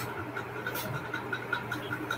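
A pause in the talk, filled with a steady low hum and faint line noise from the call audio, and one short hiss a little under a second in.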